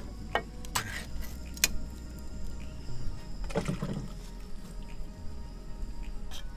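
Ring-pull lid of a metal food can being popped and torn open: a few sharp clicks in the first two seconds, then a longer rough tearing noise about three and a half seconds in.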